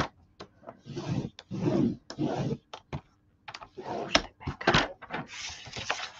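Paper trimmer's blade carriage sliding along its rail in several short strokes as black cardstock is scored, with sharp plastic clicks. Cardstock rustles near the end as the sheet is lifted and turned.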